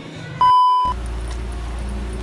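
A single loud, steady electronic beep, about half a second long, of the kind used as an edit or censor bleep. Background music starts right after it.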